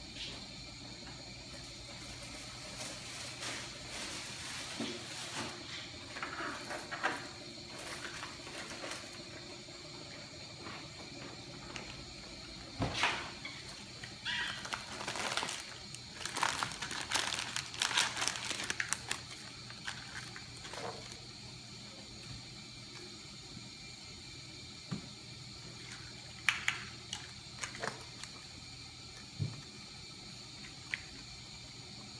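Plastic packaging crinkling and rustling in irregular bursts as supplies are unwrapped by hand, loudest about halfway through.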